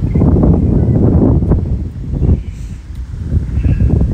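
Wind buffeting the microphone: a loud, uneven, gusting rumble.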